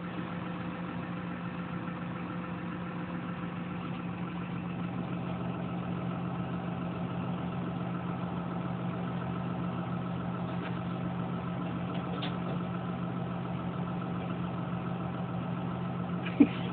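A heavy vehicle's engine idling steadily, a constant low hum.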